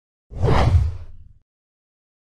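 Whoosh sound effect for an animated logo reveal, with a deep low rumble. It swells quickly about a third of a second in and dies away about a second later.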